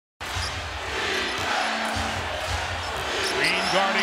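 Basketball dribbled on a hardwood court, about two bounces a second, under steady arena crowd noise. A commentator's voice comes in near the end.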